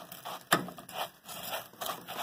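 A spatula stirring raw rice grains in a pot as the rice is toasted in oil: irregular rasping, scraping swishes of the grains, with one sharp knock about half a second in.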